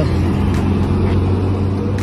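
Pickup truck engine running close by as it drives past, a steady low hum.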